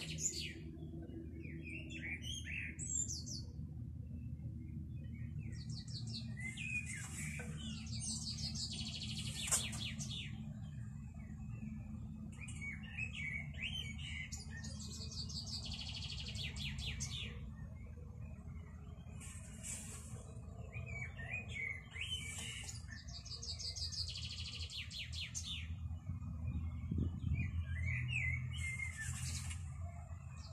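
A small songbird singing short phrases over and over, each a rapid high trill followed by lower twittering notes, repeating every two seconds or so. A steady low background rumble runs underneath.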